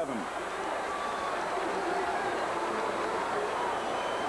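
Stadium crowd noise: a steady roar of many voices, with a few faint individual shouts standing out.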